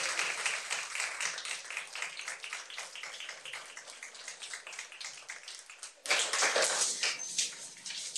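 A roomful of people applauding, many hands clapping, the clapping thinning out over about six seconds. About six seconds in comes a sudden louder burst of noise that dies down again within a second or two.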